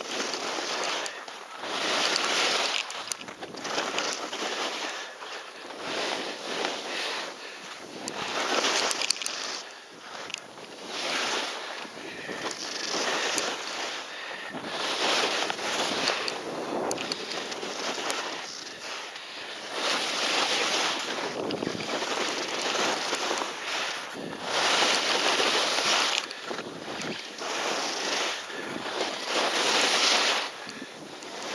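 Skis scraping and sliding on firm snow in a series of linked turns down a steep couloir, a swell of hiss about every two seconds, with wind on the microphone.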